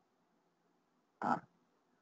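Near silence, broken a little past a second in by a man's short hesitant "ah".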